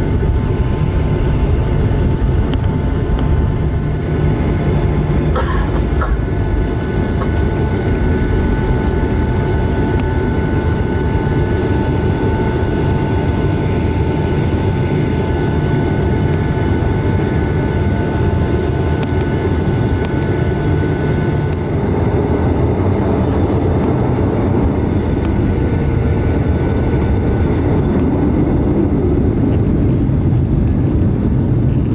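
Cabin noise of a Boeing 737-800 taxiing, its CFM56 engines at idle: a steady low rumble with several high, steady tones over it. A single brief knock about five seconds in.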